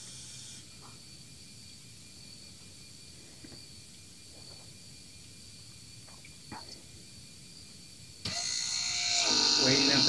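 Toyota Prius brake actuator's ABS pump motor switching on suddenly about eight seconds in and running with a steady electric whine, as the scan tool cycles the pump during brake bleeding. Before it there are several seconds of low background with a few faint clicks.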